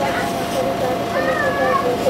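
Inside a passenger train coach as it slows at a station: a steady electrical hum and low rumble under passengers' chatter. A short, high, wavering cry sounds about a second in.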